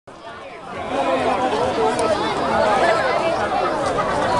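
Crowd of spectators chattering, many voices overlapping at once, swelling to full level about a second in.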